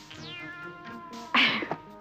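A long, pitched, voice-like call that falls in pitch, followed about a second and a half in by a short, loud, breathy burst.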